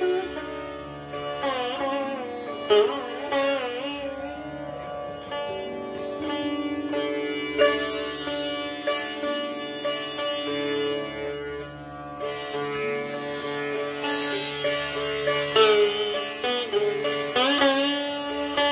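Sitar playing an alaap in Raag Bhatiyar: plucked notes with bending glides between pitches, then a quicker run of plucks near the end.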